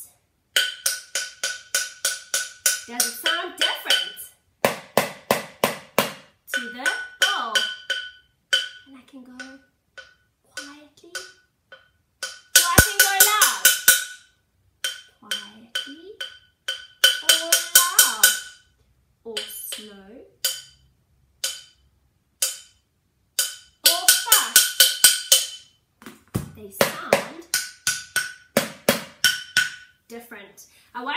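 A stainless steel cooking pot struck with a wooden spoon, in runs of quick strikes with short pauses between; each strike gives a ringing metallic tone. Some runs are slower and some fast, the loudest a dense rapid roll about 13 seconds in.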